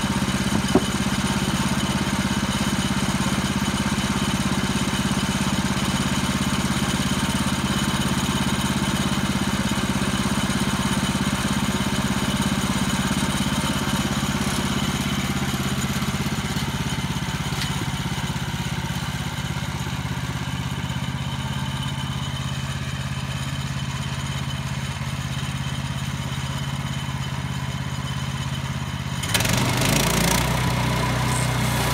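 Gas engine of a Woodland Mills portable bandsaw mill running steadily, with a single small click about a second in.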